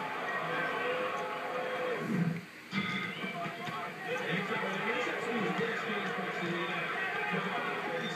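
Television broadcast audio heard through the TV's speaker: indistinct voices mixed with background music. The sound drops out briefly about two and a half seconds in.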